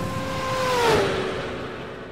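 Outro logo sound effect: a rushing whoosh with a held tone that slides down in pitch about a second in, then fades away.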